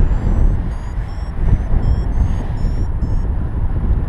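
Wind buffeting the microphone in flight, with a paragliding variometer sounding a quick run of short, high-pitched beeps that shift in pitch and stop shortly before the end; the beeping is the vario's signal that the glider is climbing in lift.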